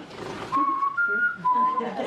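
A person whistling three short notes, the middle one higher than the other two.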